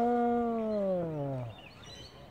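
A person's long, drawn-out "uhh" voice sound that holds its pitch and then slides steadily down before it stops about one and a half seconds in.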